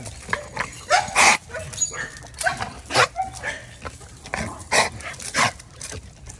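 A dog barking in an irregular string of short, sharp barks, excited and rearing up on its tether.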